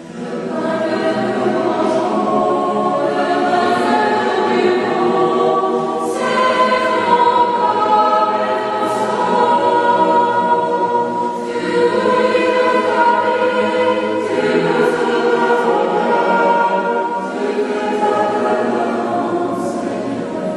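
A choir singing a church hymn in long held notes, coming in after a brief dip at the start.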